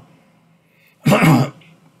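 A man coughs once, a short loud burst about a second in.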